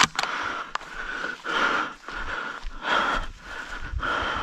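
A man breathing hard close to the microphone, about one loud breath every second and a half. A couple of sharp clicks come near the start.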